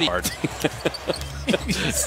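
Basketball game broadcast audio: a commentator's voice over the bounce of a basketball on a hardwood court.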